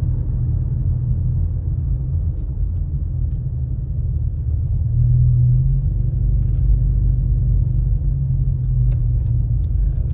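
Car driving at road speed, heard from inside the cabin: a steady low rumble of engine and tyres on the road, swelling slightly about halfway through.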